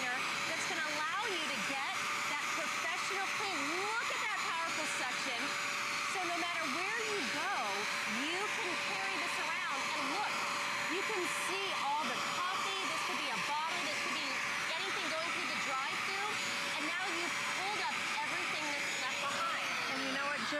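Bissell Spot Clean Pro portable carpet deep cleaner running, a steady motor whine with rushing suction as its hand tool is drawn over a carpet mat. It cuts off near the end.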